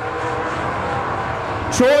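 Late model street stock race car engines running at speed on a dirt oval, a steady drone, with a commentator starting to speak near the end.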